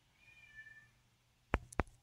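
A faint, brief high-pitched animal call lasting under a second, followed by two short sharp clicks near the end.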